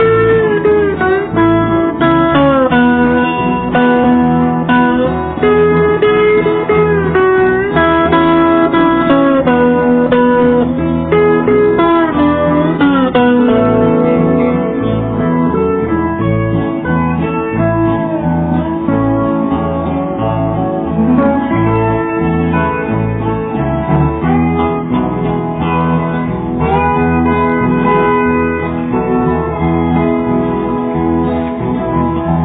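Instrumental break of a country song: steel guitar playing gliding, sliding melody lines over strummed acoustic guitar and a steady bass pulse.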